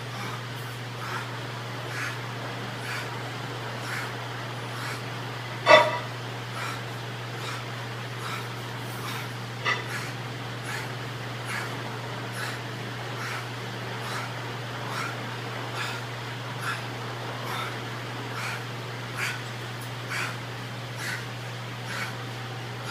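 A man's short, forceful breaths or grunts with each dumbbell bench press rep, about one a second, with one much louder burst about six seconds in. A steady low hum runs underneath.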